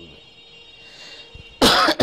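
An elderly man coughs once, short and loud, near the end.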